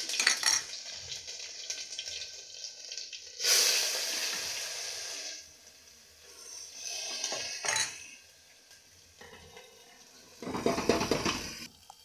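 Onion, ginger and garlic paste frying in hot oil in an aluminium pressure cooker, with spoon clinks and scraping against the pot. A loud sizzle bursts up about three and a half seconds in and dies down after about two seconds, and another loud burst comes near the end.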